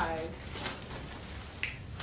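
Thin plastic carrier bag rustling as it is opened and clothes are pulled out of it, with a few sharp crackles.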